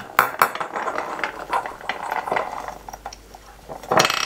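Hands handling small DC motor parts on a bench: several light clicks and knocks from the metal motor can, rotor and plastic centering ring, mostly in the first half, with rustling as the copper wire leads are threaded through the ring.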